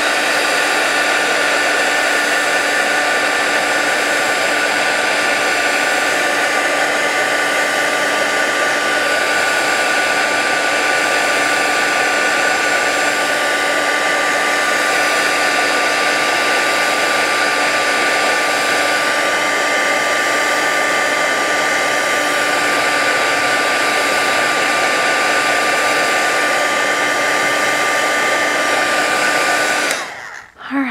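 Handheld craft heat tool blowing hot air to dry watercolor paint: a loud, steady fan rush with a constant whine. It cuts off at the very end.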